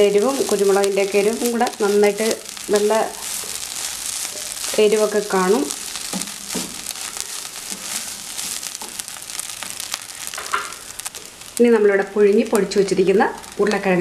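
Shredded chicken filling frying in a non-stick pan, a steady sizzle with the scrape and rustle of a wooden spatula stirring it. A person's voice comes in briefly near the start, in the middle and near the end.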